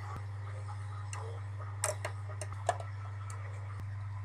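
Scattered light clicks and taps from hands working small plastic candy-kit packets and a plastic tray, over a steady low electrical hum.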